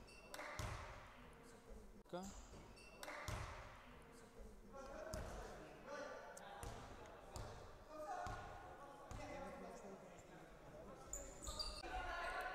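Basketball bouncing on a hardwood gym floor, a few separate thuds in the first three seconds, echoing in a large hall. Faint voices call out across the court in the middle of the stretch.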